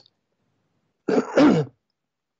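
A person clearing their throat once, about a second in, in two quick parts after a moment of silence.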